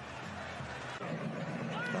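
Steady background ambience of a televised football match, an even wash of stadium noise with faint distant voices. A commentator's short word comes in at the very end.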